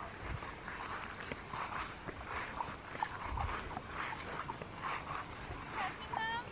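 Faint footsteps swishing through grass at a walking pace, one soft step roughly every half to three-quarters of a second.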